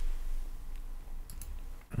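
A few faint computer mouse clicks, the clearest about one and a half seconds in, over a low steady hum.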